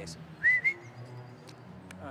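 Two short, high whistled chirps in quick succession about half a second in, each rising then falling, over a low steady hum.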